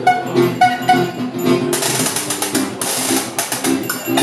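Live acoustic duo music: an acoustic guitar strummed in a steady rhythm, with sharp percussive clicks and a few short held notes from the second player in the first second.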